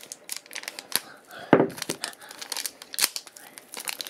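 Foil Shopkins blind bag being crinkled and torn open: a run of crackles and rips, with louder tears about one and a half seconds in and again about three seconds in.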